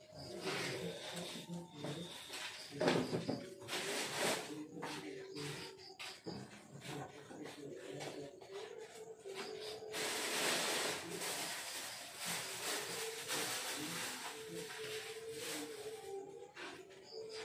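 Indistinct voices with scattered short knocks and rustles.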